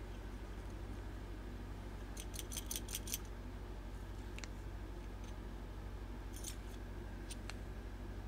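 A quick run of light clicks, about seven in a second, about two seconds in, then a few scattered taps near the end, as small plastic powder containers and a zip bag are handled. A low steady hum runs underneath.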